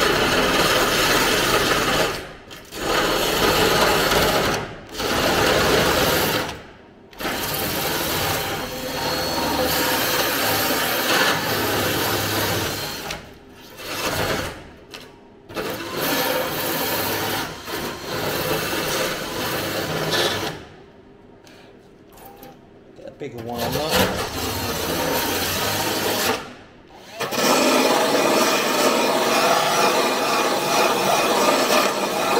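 Cordless drill spinning a small wire brush against the steel bodywork of a Ford Capri, scrubbing off surface rust. It runs in repeated bursts of a few seconds with short pauses between, with a longer pause a little past two-thirds of the way through.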